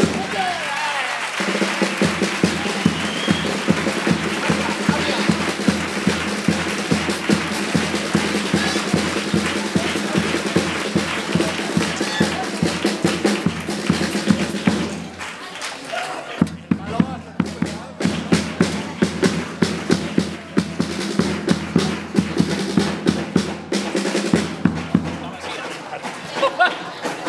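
Carnival chirigota band music: acoustic guitars over a bass drum and other drums keeping a steady, driving beat. The music thins out briefly about fifteen seconds in, then picks up again.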